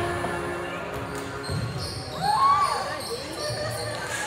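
Volleyballs thudding off hands and the gym floor during warm-up, echoing in a large gymnasium, over background music. A voice calls out a little past halfway through.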